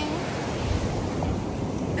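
Ocean surf washing on the shore as a steady hiss, with wind rumbling on the phone's microphone.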